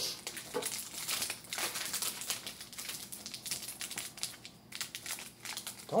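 Crinkling and crackling of Garbage Pail Kids trading-card pack wrappers being handled, in quick irregular rustles.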